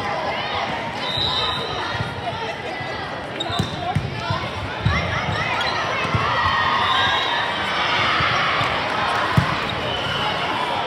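Volleyball rally in a large gym: the ball is struck with a few sharp smacks, the loudest near the end, over continuous shouting and calling from players and spectators, echoing in the hall.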